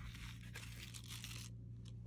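Faint rustling of card stock as a handmade pop-up card is opened and handled.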